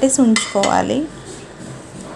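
A metal spoon clinking and scraping against a nonstick kadai holding egg curry, a short clatter about a third of a second in.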